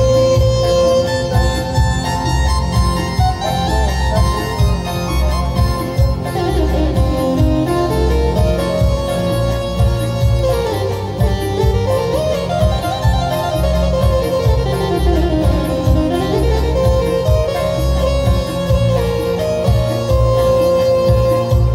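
Yamaha electronic keyboard playing a melody over a steady low beat, with quick runs sweeping down and up the scale in the middle.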